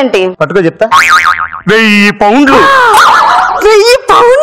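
A cartoon-style 'boing' comedy sound effect with a wobbling pitch about a second in, laid over people's voices.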